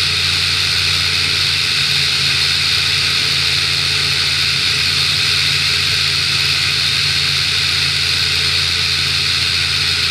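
Sting S3 light-sport aircraft in cruise: a steady engine and propeller drone under an even rush of airflow noise, with no change in pitch or level.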